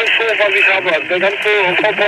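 A voice coming over a handheld two-way radio, thin and distorted with a hiss behind it.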